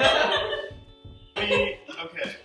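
Short vocal outbursts from a person straining in a partner yoga pose: a loud cry at the start lasting about half a second, and a shorter one about a second and a half in, over quiet background music.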